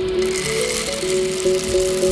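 Background music of held notes, over the rattle of roasted peanuts being poured into a wooden mortar.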